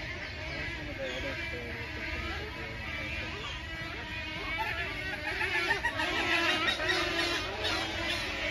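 A large flock of birds in the trees calling all at once: a dense chorus of overlapping squawks and chirps that grows louder about five seconds in.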